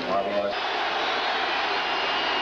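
Steady noise of a large stadium crowd. A commentator's voice trails off in the first half second.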